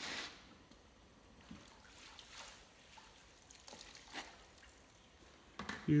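A metal queen excluder lifted out of the water in a wax-melting tank: a brief slosh at the start, then faint dripping and trickling back into the tank.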